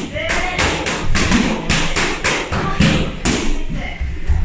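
Punches and kicks landing on kick pads in quick succession: about a dozen sharp smacks, roughly three a second at an uneven pace.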